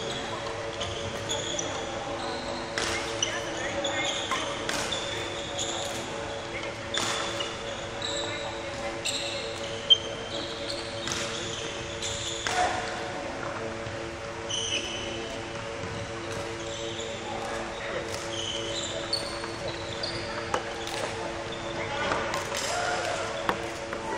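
Court shoes squeaking in short, high chirps on a wooden badminton court floor, with footfalls and scattered knocks, over a steady hum in a large hall. One sharp crack, the loudest sound, comes about ten seconds in.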